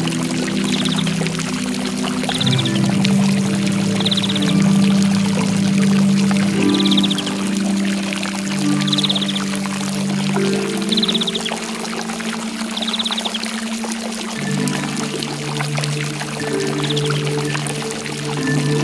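Slow piano chords held over the steady rush of a waterfall. A cricket chirps in short trills every second or two.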